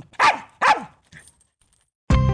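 A small dog barking twice, about half a second apart, with a fainter third sound about a second in.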